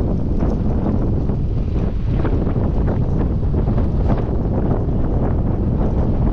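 Wind buffeting a handheld camera's microphone on a moving motorbike, a steady, heavy low rumble of wind and road noise.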